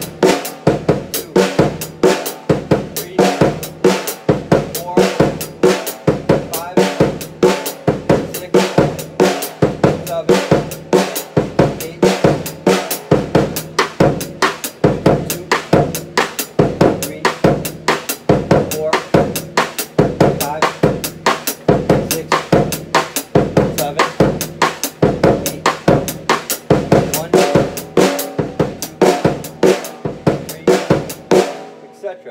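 Drum kit playing a linear funk groove in steady eighth notes grouped three plus five: hi-hat, snare, bass drum, then hi-hat, snare, hi-hat, bass drum, bass drum, one drum at a time with no two struck together. By the middle the snare strokes have given way to cross-stick clicks, the stick laid across the snare and struck against its rim.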